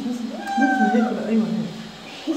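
A wet cat meowing while held in bath water: one long drawn-out meow, dropping in pitch near the end, the cat's protest at being bathed.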